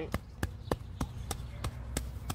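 Hatchet chopping repeatedly into lawn turf and soil, quick even strikes about three a second.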